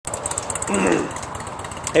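A man clearing his throat once, about two thirds of a second in, over a steady low mechanical rumble.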